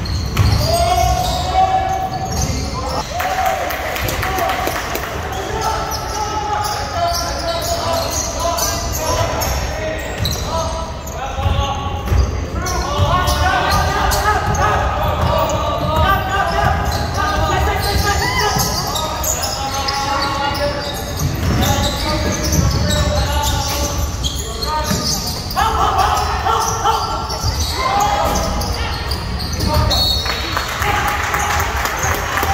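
A basketball being dribbled on a hardwood gym floor during play, amid indistinct voices of players and spectators in the gym.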